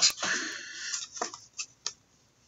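A few light clicks and ticks from handling a trading card and its packaging, spaced out and faint, the last just before the end.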